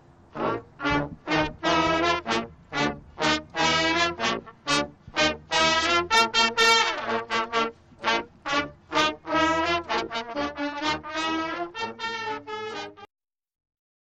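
High school marching band brass section (trumpets, mellophones and a sousaphone) playing a lively tune in short, separated notes. The music cuts off suddenly about a second before the end.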